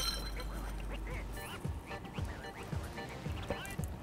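A plastic straw worked in a glass of iced cocktail: faint, short squeaks and small clicks, scattered through the quiet, becoming more frequent after the first second.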